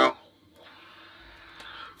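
A synthesizer phrase shaped through a talkbox stops abruptly and fades out in the first moment. What follows is a short pause of quiet room tone, with a couple of faint clicks near the end.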